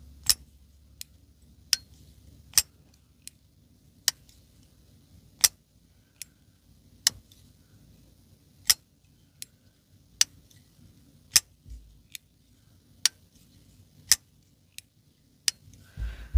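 TwoSun TS319 titanium-scaled liner-lock folding knife worked open and shut by its thumb hole over and over: about twenty sharp metallic clicks, roughly one every 0.7 s. The closes end in a little ting.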